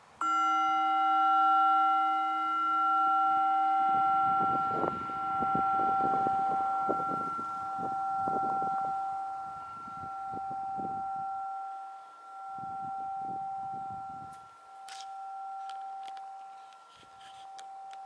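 A singing bowl struck once, ringing with several overtones and dying away slowly, its sound swelling and fading in slow waves. It is the bell that closes the meditation.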